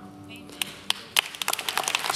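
Scattered hand claps from a congregation, a few at first and coming faster toward the end, over a faint held music chord.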